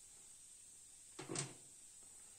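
A single short scrape-like noise, about a third of a second long, a little over a second in, over faint steady hiss.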